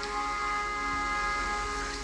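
Quiet background film score: soft sustained chords held steady, with no beat.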